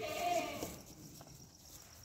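A goat bleats once, a short wavering call in the first moment, then only faint background with a few light ticks.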